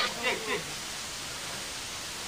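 Steady background hiss, with a brief snatch of voices in the first half-second.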